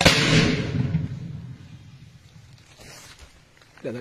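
A single loud explosion: a sudden blast whose rumble dies away over about two seconds.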